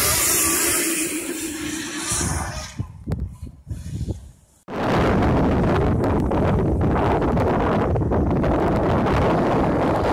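Electric motocross bikes passing close, a steady motor whine over the rush of tyres on dirt, fading away over the next two seconds. After a sudden cut, steady wind noise buffets the microphone.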